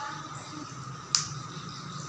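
A small plastic hand-sanitizer bottle clicks once, sharply, about a second in as it is handled, over a steady low room hum.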